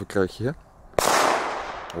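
A single sharp bang from a Silver Cracker firecracker going off about a second in, its echo trailing away over the following second.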